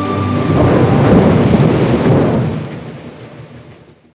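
A loud, noisy rumbling sound effect that swells about half a second in, as a held musical chord ends, then dies away over the next three seconds.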